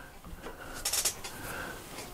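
Faint clatter and rustle of items on a workbench as a roll of gaff tape is picked up, about a second in.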